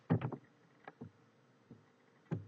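A quick cluster of soft knocks just after the start, then a few lighter clicks: handling and movement noise as a person comes up against the recording phone.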